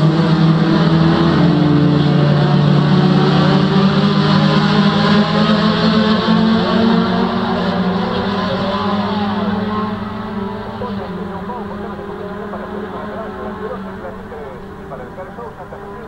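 A pack of touring race cars running hard together, several engines at once with pitches rising and falling against each other. The sound fades steadily through the second half as the cars draw away.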